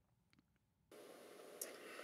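Near silence; about a second in, faint room tone begins, an even hiss with a light steady hum.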